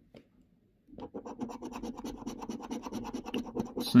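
A coin scraping the scratch-off coating from a paper lottery scratchcard in rapid strokes, starting about a second in.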